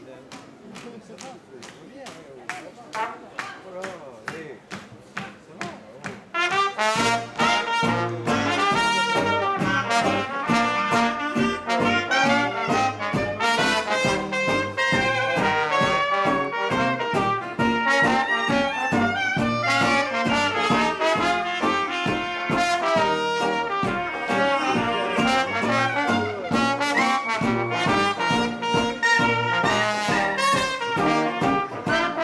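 A traditional New Orleans jazz band begins a tune: a quieter, evenly ticking lead-in, then the full band comes in about six or seven seconds in. Cornet, trombone, clarinet and sousaphone play together over a steady banjo and guitar beat.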